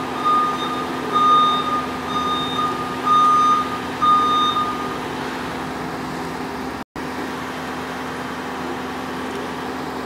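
Vehicle reversing alarm beeping, one steady tone repeated about once a second, stopping about five seconds in, over a steady low hum. The sound cuts out completely for a moment near seven seconds.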